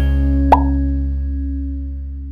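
The end of a channel intro jingle: a low held chord slowly fading out, with a single short pop sound effect about half a second in.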